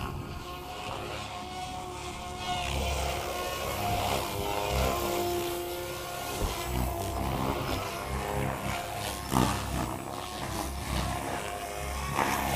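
Two radio-controlled helicopters, a Goblin 700 and a Goblin 380, flying aerobatics. Their rotor blades whir and their motors whine, the pitch rising and falling as they manoeuvre.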